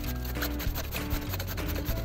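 Cabbage shredded on a handheld slicer, the head pushed across the blade in repeated strokes, with background music carrying held notes and a steady bass underneath.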